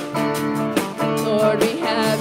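Live worship band playing a song, a woman singing the lead over guitars, with held, wavering sung notes.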